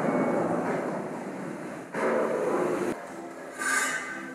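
Rumbling, rolling noise from the sound effects of a historical projection show, with a short break about two seconds in. After three seconds it thins to quieter steady tones, with a brief bright sound near the end.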